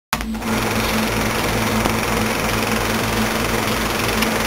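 Film projector sound effect: a steady mechanical whir and rattle over hiss and a low hum.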